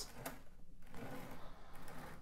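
Faint handling noise: light scraping and rustling as a glass orchid pot filled with bark chunks is turned on a tabletop, with a small click shortly after the start.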